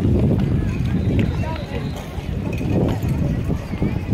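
Voices of people strolling past, chattering over a steady low rumble.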